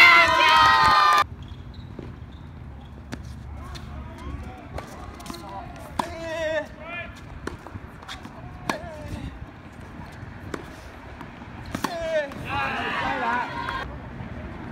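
A loud shout in the first second, then scattered sharp pops of a tennis ball bouncing on a hard court and being struck by rackets, with fainter voices in between and a louder voice near the end.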